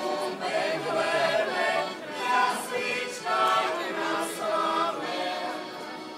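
A mixed choir singing live on an open-air stage, amplified through the stage loudspeakers, with long held notes in several phrases.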